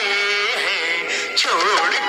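A children's song played back for dancing: a singing voice over instrumental music, with a wavering held note about one and a half seconds in.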